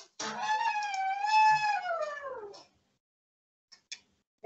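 A single long, high animal call of about two and a half seconds, holding its pitch and then falling away near the end.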